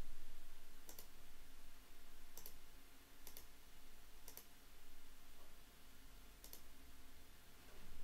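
About five faint, separate clicks of a computer mouse, spaced irregularly, over a low steady electrical hum.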